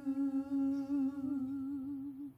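A singer's voice holding the song's long final note with a slow vibrato, tapering near the end.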